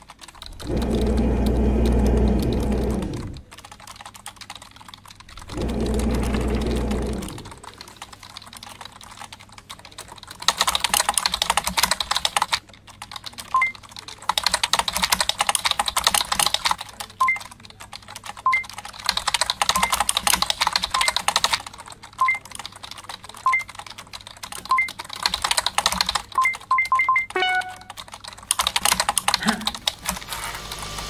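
Computer keyboards typed rapidly in bursts of several seconds at a time, with short high electronic beeps dotted through the typing and a brief run of tones near the end. Before the typing starts there are two loud low hums, each about two seconds long.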